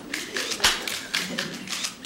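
Still-camera shutters clicking in quick, irregular succession, several a second, with one heavier knock about two-thirds of a second in.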